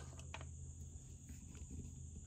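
Faint, steady high-pitched chirring of insects in the background, with a couple of light clicks just after the start as the oil filler cap is handled.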